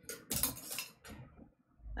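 Knitting needles clicking and clinking against each other as stitches are worked, in a few short bursts during the first second.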